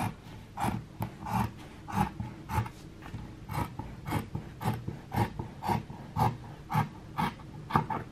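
Scissors cutting through folded fabric in a steady run of snips, about two cuts a second.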